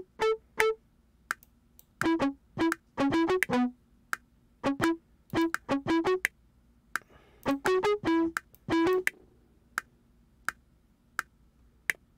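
Software bass guitar (Cakewalk SI-Bass Guitar) played through the TH3 fuzz pedal simulation: a line of short plucked notes with sharp attacks, in uneven clusters with brief gaps.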